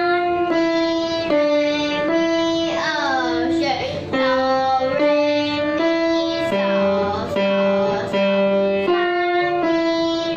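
A young girl singing a melody while accompanying herself on a grand piano, the tune moving in a steady series of held notes.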